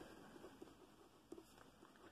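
Near silence, with faint light ticks and scratches of a pen nib writing on a paper swatch card.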